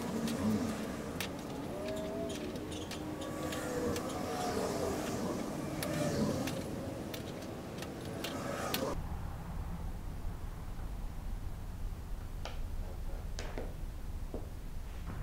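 Small metal clicks and taps of magnets and pliers being handled on a workbench as the magnets are lined up in a row, with a few isolated clicks in the quieter second half.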